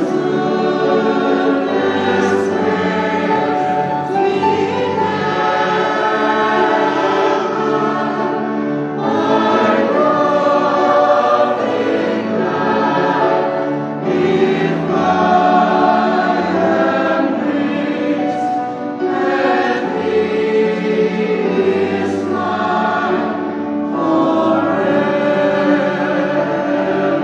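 Choir singing a hymn, with sustained notes that change every second or two, continuously.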